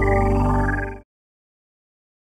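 Ambient logo-sting music: held synth chords over a deep low drone, with a wavering higher tone on top, cutting off suddenly about a second in.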